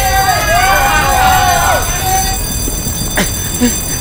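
An electric fire alarm bell ringing steadily, under people's voices in drawn-out, pitch-bending calls for the first two seconds. A sharp click comes about three seconds in.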